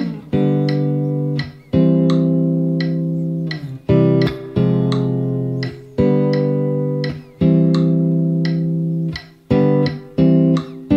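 Clean electric guitar, a Fender Telecaster, playing slow low-register triads on the bottom strings through a chord progression in C. Each chord is struck and left to ring for one to two seconds, fading before the next.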